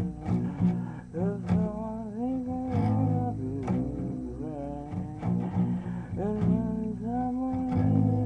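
Guitar music: a wavering melody line that slides up and down in pitch over sustained low notes, with plucked notes throughout.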